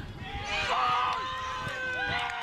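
Several voices shouting and calling out across an outdoor soccer field during play, overlapping and drawn out, loudest about half a second to a second in.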